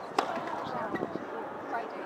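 Tennis racket striking the ball on a serve: one sharp pop just after the start, over a murmur of spectator voices.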